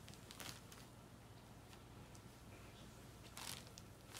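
Near silence: room tone with a faint low hum, broken by two brief faint rustles, one about half a second in and one near the end.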